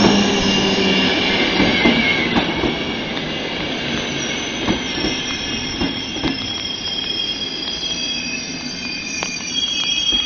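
Passenger coaches of an express train hauled by an EP09 electric locomotive rolling past close by. The wheels run on the rails with a thin, high squeal and a few sharp clicks over rail joints. It is loudest at first, as the locomotive draws away, then settles.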